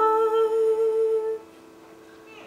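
A woman's voice holds a long sung note with vibrato over a sustained digital keyboard chord. Both die away about a second and a half in, leaving a near-quiet pause.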